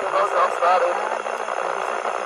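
Faint voices talking a little way off, over a steady background hiss.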